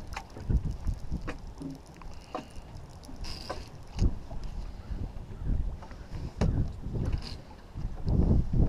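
Wind buffeting the microphone in uneven gusts, with water slapping against the boat's hull and scattered sharp little knocks and clicks.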